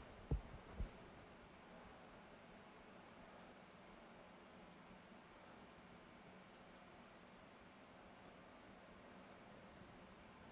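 Dry-erase marker writing on a whiteboard, faint strokes of the felt tip on the board, after two soft knocks in the first second.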